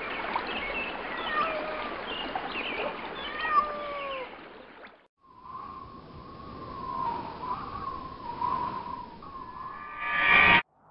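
Nature ambience: a steady rush of running water with birds chirping over it. After a short cut-out about halfway, quieter outdoor noise with one long, wavering call or tone.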